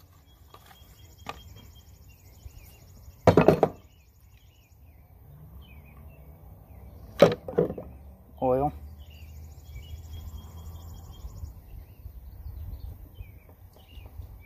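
Metal parts and tools being handled on a tractor transmission case while a pinion seal is readied: a quick cluster of sharp knocks about three seconds in, then a single sharp click about halfway through followed by two lighter ones.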